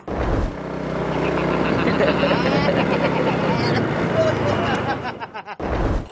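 Motor of a sugarcane juice roller press running steadily, starting abruptly just after the start and cutting off shortly before the end.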